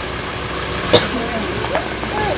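A steady low engine rumble, with one sharp click about a second in.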